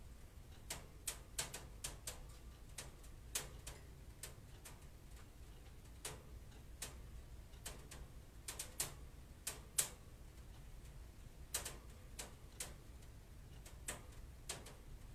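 Faint, irregular sharp clicks and ticks at uneven intervals over a low steady hum, a few of them louder, including one about ten seconds in.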